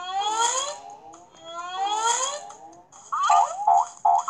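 Cartoon sound effects from an animated children's story app: two rising, swooping tones about a second and a half apart, then a quick run of short, bouncy repeated notes starting about three seconds in.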